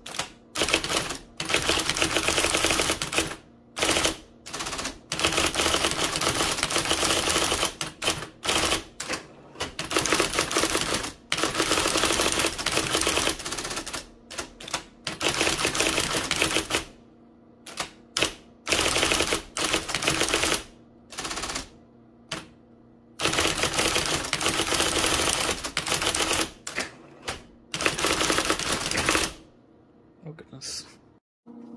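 1980 IBM Selectric III electric typewriter typing in fast runs: the typeball strikes in rapid clatter, in bursts of a few seconds broken by short pauses, with a longer pause about seventeen seconds in.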